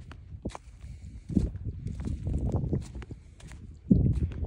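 Footsteps on dry, cracked field soil, walking along rows of young maize, an uneven series of dull steps with the loudest one near the end.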